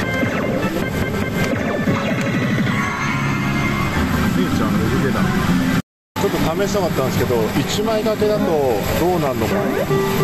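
Electronic music and jingles from a Famista-themed pachislot machine, over the steady noise of the parlour. There is a brief dropout to silence a little past halfway, then the machine sounds carry on.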